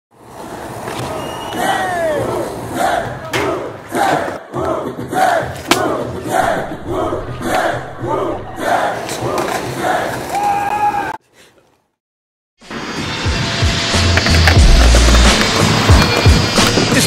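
Voices shouting in a quick repeated rhythm, with sharp clicks among them, for about eleven seconds. They cut off suddenly into a second of silence, and then a hip-hop beat with a heavy bass comes in.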